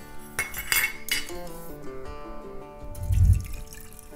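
Herbal tea poured from a stainless steel cup through a small strainer into an enamel mug, after a few light metal clinks as the strainer is set on the mug, over background music. A low dull bump sounds about three seconds in.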